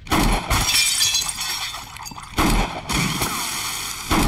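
Pistol shots with glass shattering and clattering after them: loud sudden blasts near the start and again a little past halfway, each followed by a long bright crash of breaking glass.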